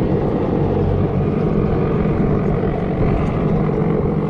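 Navy helicopter flying low over open water, its rotor heard as a steady low rumble.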